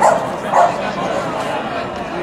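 A dog barking: two short, sharp barks, one right at the start and another about half a second later, over the chatter of a crowd.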